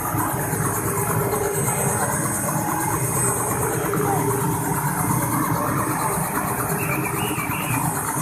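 Light helicopter running on the ground, its engine idling steadily with the rotor turning, and a faint high whine over the engine noise.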